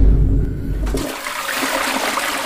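Rushing water: a strong low rumble for about the first second, then a steady hiss of running water.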